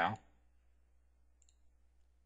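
A single faint computer mouse click about one and a half seconds in, against near silence.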